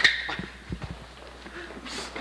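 Play-fight scuffle on a hard hallway floor: a sharp loud sound right at the start, then a few dull irregular thumps of feet and bodies, and another short sharp sound near the end.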